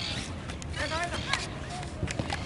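Short shouted calls from voices on a football pitch, with one brief sharp knock a little past the middle.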